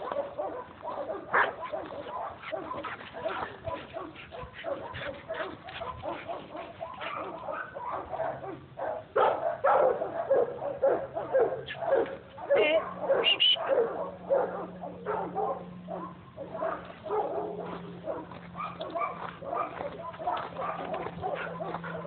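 Two German Shepherds play-fighting, vocalizing in quick, overlapping short calls that are busiest and loudest around the middle.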